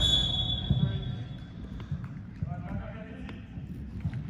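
Indoor soccer game in a large hall: the ball and feet thudding on turf and players' voices calling out, over a low reverberant rumble. A brief high ringing tone at the very start fades away over about a second and a half.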